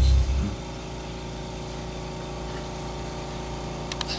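The backing track's last low note stops about half a second in, leaving a steady electrical hum with a buzzing edge, then a single sharp click near the end.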